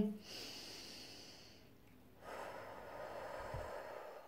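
A woman breathing slowly and audibly, two breaths in all. The first is a soft, high hiss lasting about a second and a half. The second, about two seconds in, is lower, a little louder and longer.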